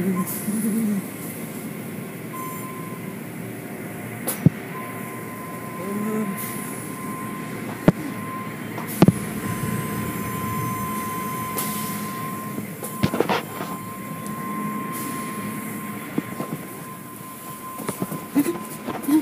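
Automatic car wash machinery running: a steady rushing noise with a thin, steady whine from about four seconds in and a few sharp knocks.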